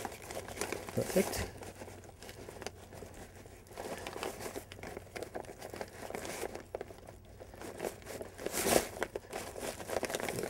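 Kite leading-edge fabric and inflatable bladder rustling and crinkling under the hands as they are handled and straightened. The sound comes as irregular scrapes, with a louder rustle near the end.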